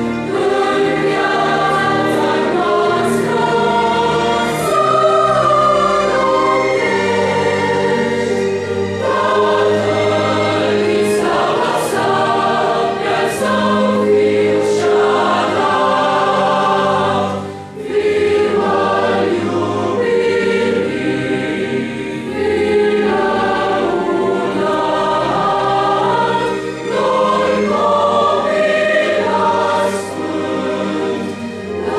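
Mixed choir of young men and women singing a slow Christmas lullaby in Romanian, in sustained chords, with one brief pause a little past the middle.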